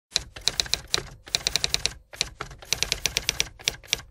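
Typewriter sound effect: fast runs of sharp key clacks, broken by short pauses about one and two seconds in.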